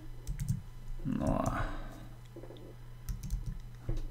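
Computer keyboard typing: irregular key clicks in short bursts.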